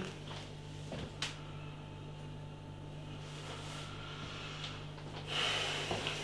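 A man taking one long sniff over a glass of ale to smell its aroma, near the end, over a low steady hum.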